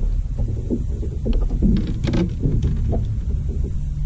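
Low, steady rumble on a bass boat, with a few light knocks and taps from the deck.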